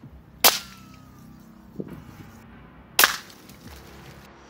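Two suppressed .22 rifle shots, about two and a half seconds apart, each a sharp crack with a short tail.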